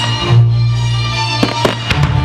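Music with aerial firework shells bursting over it; three sharp bangs come in quick succession in the second half.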